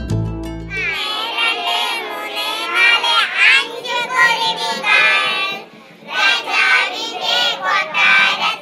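A group of children singing a song together. A short stretch of instrumental music ends about a second in, and the singing breaks briefly about six seconds in.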